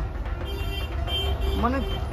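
A vehicle horn sounds for about a second over a steady traffic rumble, and a voice is heard briefly near the end.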